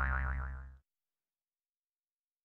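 A warbling, boing-like logo sound effect with a deep low end. It fades steadily and cuts out less than a second in.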